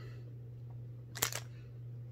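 A quick pair of mouth clicks, lip smacks while tasting, about a second in, over a steady low hum.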